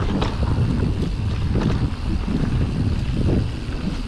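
Wind rushing over a GoPro's microphone on a mountain bike descending a dirt trail, with a steady low rumble from the knobby tyres on the ground and many short rattles and knocks from the bike over bumps.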